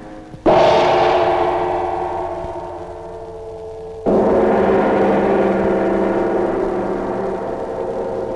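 Two gong strikes: the first, about half a second in, rings out rich and full and fades over a few seconds; the second, about four seconds in, rings on steadily.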